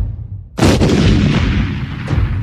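Anime-style power-up sound effect: a loud sudden blast about half a second in that dies away slowly into a long noisy rush.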